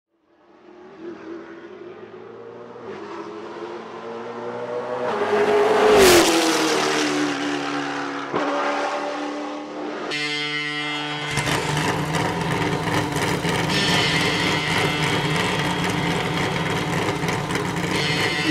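Race car engine approaching at speed, swelling to its loudest as it passes about six seconds in, its pitch dropping as it goes by. From about ten seconds, music with steady sustained tones takes over.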